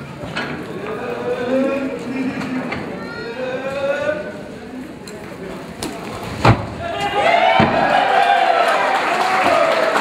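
Voices and calls in a large indoor hall, louder and higher-pitched over the last few seconds, with one sharp thump about six and a half seconds in.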